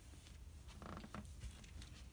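Faint rustling and small scattered clicks of cloth being handled, close to quiet.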